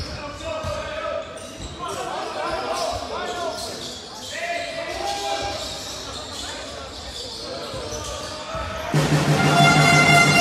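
Basketball game in a large echoing hall: players' shouts and voices, ball bounces and short squeals. About nine seconds in, a loud, steady electronic buzzer starts suddenly and keeps sounding.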